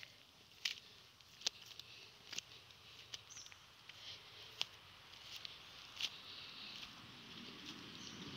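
Footsteps on a dirt and gravel path, a short sharp step roughly every second, over a faint steady high hiss.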